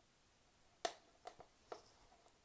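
One sharp click a little under a second in, then two fainter ticks: fingers and nails picking at the sticker seal on a small cardboard product box.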